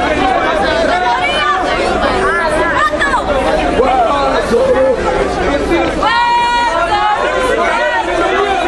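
Crowd chatter: many people talking at once, tightly packed. About six seconds in, one voice rises loud and high above the rest for under a second.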